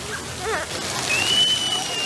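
Splash pad water jets spraying, a steady hiss of falling water, with a child's short cry about half a second in and then a long, high-pitched squeal.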